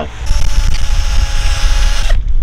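A spinning wire wheel brushing the paint off the brass Wilcox Crittenden Skipper Type 8 head pump casting: a loud, steady whirring with scratchy hiss. It starts a moment in and cuts off at the end.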